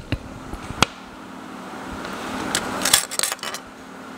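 Handling and unwrapping of a disposable plastic spoon in its plastic wrapper: a couple of sharp clicks, soft rustling, then a burst of crisp plastic crinkling about two and a half to three and a half seconds in.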